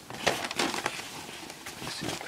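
Irregular rustling with short crackles from a cloth military field shirt being handled and moved about by hand.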